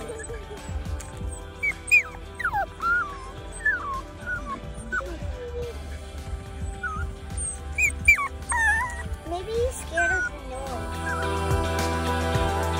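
Cavapoo puppy whining and whimpering in its crate: short, high-pitched cries that slide up and down, in two bouts.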